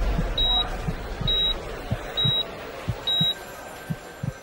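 Electronic beeper sounding a short, high beep about once a second, over a murmur of voices and some low knocks.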